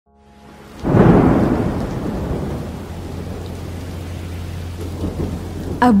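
Thunderstorm ambience: steady rain, with a loud thunderclap about a second in that rumbles and slowly fades away.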